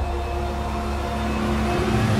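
Film-score drone: a deep, steady electronic rumble with a few held tones above it, growing slightly louder near the end.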